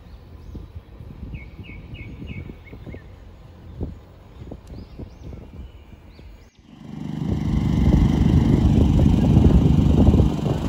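Small birds chirp faintly in short calls over a low, uneven outdoor rumble. About two-thirds of the way in, the sound cuts to a much louder, fluttering low rumble of wind buffeting the microphone.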